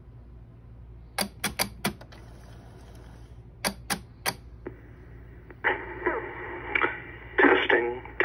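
Panasonic EASA-PHONE KX-T1505 tape answering machine's switches and tape mechanism clicking: four sharp clicks within about a second, then three more about two seconds later. Near the end a recorded voice message starts playing back through the machine's small speaker.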